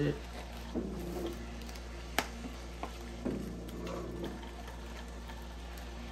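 Ricoma MT1502 embroidery machine running a design trace: its motors drive the cap frame around the outline in short moves, each a faint whir, over a steady low hum. There is a sharp click about two seconds in.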